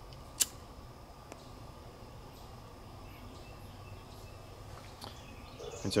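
Quiet outdoor background with a faint steady insect drone and a few faint bird chirps. One sharp click about half a second in is the loudest sound.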